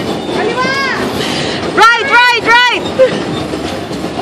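Bumper cars running on the rink floor with a steady rolling rumble; about two seconds in, a high voice calls out three times in quick succession, each call short and rising then falling in pitch.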